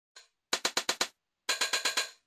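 Opening of a music track: a run of five quick, evenly spaced percussive hits, a short gap, then a second run near the end.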